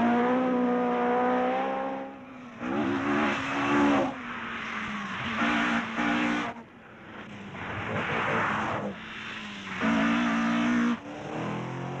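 Rally car engines at high revs. A held engine note comes first, then three or four short loud passes as cars go by at speed.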